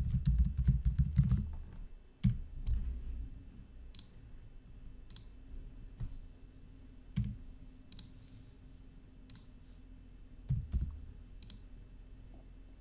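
Computer keyboard typing: a quick burst of keystrokes, then about ten single clicks spaced roughly a second apart as a mouse picks items from a menu.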